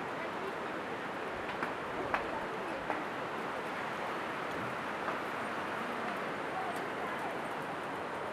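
Footsteps on the steel-grating deck of a suspension footbridge: a few sharp, separate clacks over a steady hiss.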